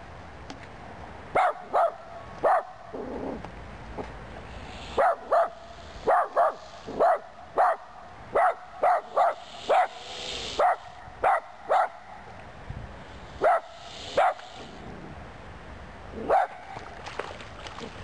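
Miniature long-haired dachshund barking repeatedly: about twenty short, sharp barks in uneven bursts, with pauses of a second or two between groups.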